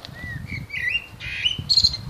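A songbird singing a short phrase of whistled notes that glide up and down, ending on a higher note, over a low, uneven rumble.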